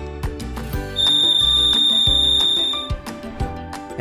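Arlo base station siren sounding a steady, piercing high-pitched tone for about two seconds, starting about a second in, over background music with a beat.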